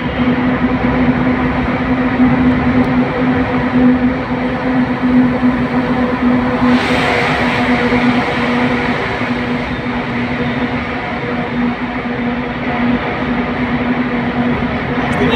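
Steady road and engine noise of a car driving through a road tunnel, heard from inside the cabin: a constant low hum under a dense rumble. About seven seconds in a louder rush comes up as the car passes a lorry alongside, then eases off.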